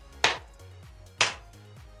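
One person's slow hand clap: single claps about a second apart, two in this stretch, each echoing briefly.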